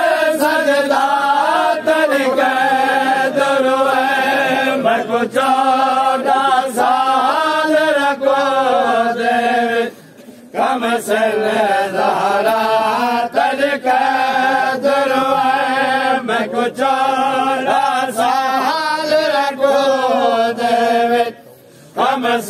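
Group of men chanting a noha (Shia lament) in unison into a microphone, with sharp slaps at intervals, the beat of matam (chest-beating). The chanting breaks off briefly about ten seconds in and again near the end, between lines.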